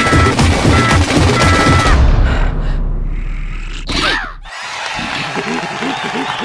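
Fast drumming beat banged out on kitchen tins, with short high melodic notes over it. It stops about two seconds in and a low hum fades away. A quick falling swoosh follows, then the cartoon bugs start chattering near the end.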